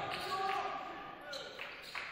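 Basketball dribbled on a hardwood gym floor, a few sharp bounces, under indistinct voices of players and spectators.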